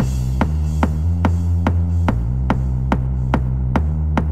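Electronic dance music from a mixed trance and hard house CD, in a sparse opening section of a track. A sustained deep bass drone steps between notes every couple of seconds. Over it, a sharp click-like percussion hit comes about two and a half times a second.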